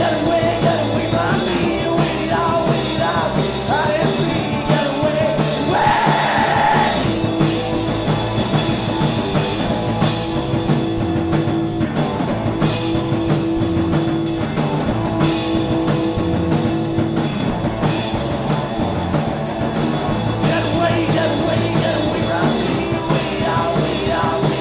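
Live punk rock band playing: electric guitar, bass and drum kit with a steady beat of drum and cymbal hits, and sung vocals in the first few seconds and again near the end.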